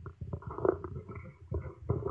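Faint, irregular clicking and crackling through the gap between two speakers.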